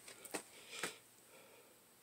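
Near silence: room tone, with a couple of faint short clicks in the first second.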